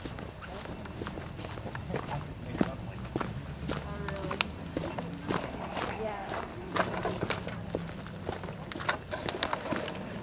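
Footsteps with scattered small clicks and knocks, under faint voices in the background.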